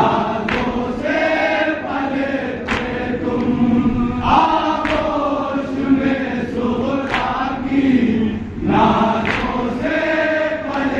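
A group of men chanting a noha, a mourning lament, in chorus, with a sharp slap about every two seconds from the rhythmic chest-beating (matam) that keeps time with the chant.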